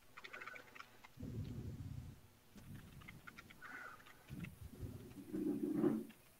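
Scattered keystrokes on a computer keyboard with soft low thumps, as code is edited in a terminal text editor. A brief low murmur comes near the end.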